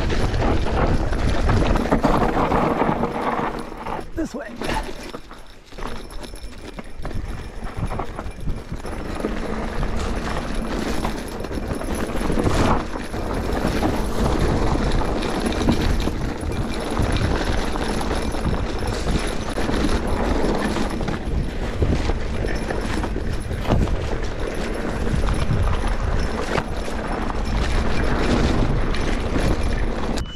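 Giant Trance Advanced Pro 29 mountain bike descending a rocky trail: tyres crunching over loose rock with constant rattles and knocks from the bike and its bar-mounted bottles and bags, under heavy wind rumble on the microphone. It eases briefly about five seconds in.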